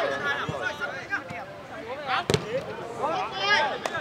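One sharp thud of a football being kicked a little over two seconds in, among men's voices calling out, with a fainter click near the end.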